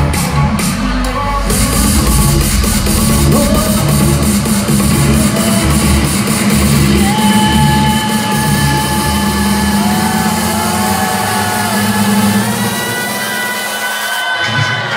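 Loud electronic dance music from a DJ set over a large hall's sound system. A heavy bass beat pulses through most of it and falls away near the end, leaving long sustained synth notes.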